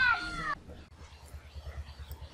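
A drawn-out, wavering call that falls in pitch and ends about half a second in, followed by a faint low throbbing.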